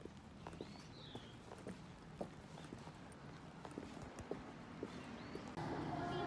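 Footsteps of a person walking, faint sharp taps about twice a second, with a single short high chirp about a second in. Music starts just before the end.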